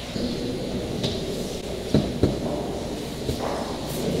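Church congregation exchanging the sign of peace: a low hubbub of murmured greetings and people shifting, with two soft knocks about two seconds in.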